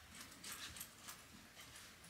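Faint rustling and light scraping of a stable fork shaking through wood-pellet bedding, in a few soft, scattered strokes.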